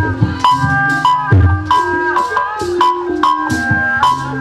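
Sundanese gamelan music: kendang hand drums play low strokes a few times among struck, ringing metal-keyed notes.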